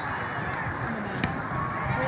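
A volleyball struck once with a sharp smack a little past halfway through, over the steady chatter of a crowd of spectators.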